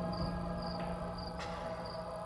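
Crickets chirping about twice a second, a short high chirp each time, over a steady low drone.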